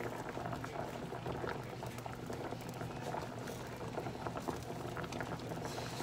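A pot of water with small potatoes at a rolling boil, bubbling steadily with a constant crackle of small pops.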